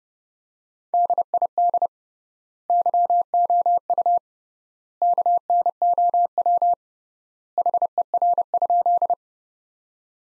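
Morse code sent at 30 words per minute as a single steady beeping tone, keyed in four groups of short and long beeps with a pause of about a second between groups. It is the sentence "Did you know her?" repeated in code, one group per word.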